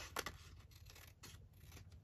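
Scissors cutting across the edge of a sheet of patterned paper: a few faint snips.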